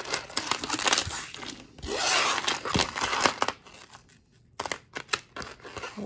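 Costume jewelry being handled: metal chains and beads rustling and clinking as a necklace is pulled out of a tangled pile, with two spells of rustling, a short lull after the middle, then a few separate clicks.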